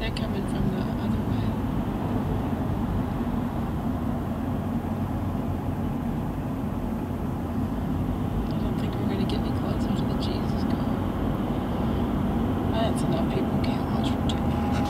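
Steady road and engine noise of a car at motorway speed, heard from inside the cabin.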